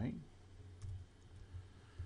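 A few faint computer keyboard clicks over a low steady hum.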